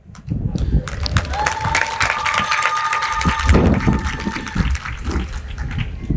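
An audience applauding, a dense patter of clapping hands. A steady high tone sounds over the clapping for about three seconds, beginning a little over a second in.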